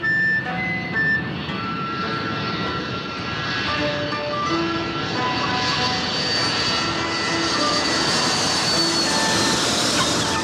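Four-engine jet airliner landing: the rushing noise of its engines grows louder, with a high steady whine that dips slightly near the end.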